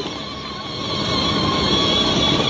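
A child's ride-on quad running with a steady whine over a rough background noise, growing louder from about half a second in.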